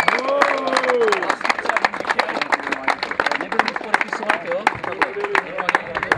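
A small group of people clapping their hands steadily, with a few voices calling out over it, most clearly near the start.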